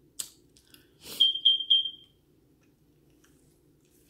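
An electronic beeper sounding three short, high beeps in quick succession at one pitch, about a second in, just after a brief rustle.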